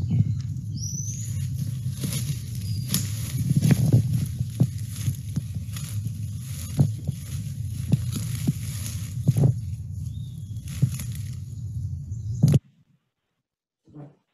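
Rustling and footsteps through dense leafy undergrowth over a steady low rumble on the microphone, with scattered clicks and a short high chirp about a second in. The sound cuts off suddenly near the end.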